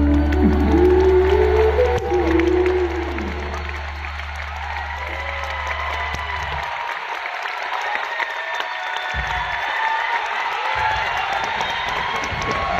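A live band's final held chord with a low bass note ringing under it and a last sung phrase in the first few seconds, over a crowd applauding and cheering. The bass note cuts off a little past halfway, leaving the applause and cheering, with whoops and whistles, on its own.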